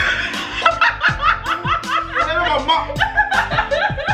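A woman laughing loudly in quick repeated bursts, over background music with a steady beat.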